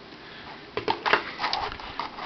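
Plastic action figure and its clear plastic blast-effect accessory being handled as a hand is swapped and the piece is fitted: a quick run of small plastic clicks and taps starting a little under a second in.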